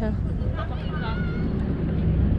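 Small boat's engine running steadily under way, a low pulsing rumble with water and wind noise over it; faint voices are heard about half a second to a second in.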